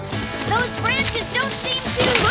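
Cartoon background music with a string of short, squeaky rising chirps, roughly two a second, like a small animal character's wordless calls.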